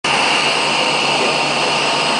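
Steady mechanical whir with a constant high hiss, running evenly without a break.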